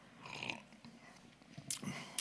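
A man drinking from a mug: faint sipping and breathing, then a short knock near the end as the mug is set down on the desk.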